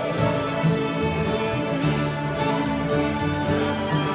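Fiddles playing a Swedish folk tune, several held melodic notes over a continuous string accompaniment.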